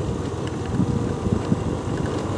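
Steady low rumble of a vehicle moving along a dirt road, mixed with wind buffeting the microphone.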